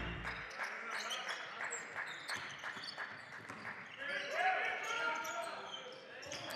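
Basketball bouncing on a hardwood court, repeated bounces about three a second for the first few seconds, with voices in the hall near the end.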